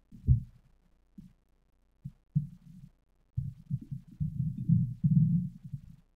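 Muffled low thumps: one sharp thump just after the start, a few scattered knocks, then denser dull rumbling and thudding through the second half that stops just before the end.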